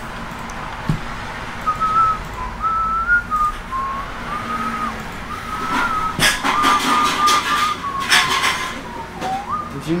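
A person whistling an aimless tune, one pure tone wandering up and down in short phrases. A few sharp clicks come about six and eight seconds in.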